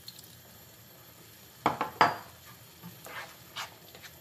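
A spatula stirring a thick tomato sauce in a frying pan, knocking sharply against the pan twice a little before halfway, then lighter taps and scrapes.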